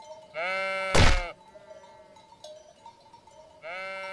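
Sheep bleating: two long bleats, one just after the start and one near the end. A single sharp knock about a second in is the clash of two rams' heads.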